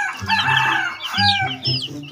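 Chicks peeping rapidly in short, high, falling notes, with an adult chicken giving two longer drawn-out calls.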